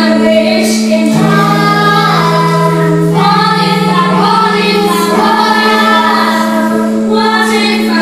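Children's choir singing a song over an accompaniment of long held low notes that step to a new pitch every second or two.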